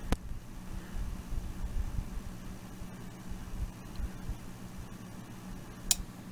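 Small 12 V LED case fan running with a steady low hum under a thermostat's control. Near the end a single sharp click comes as the thermostat reaches its 20-degree set point and switches the fan off.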